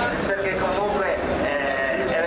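A voice speaking, mixed with a rally car's engine as the car passes through a slow coned section.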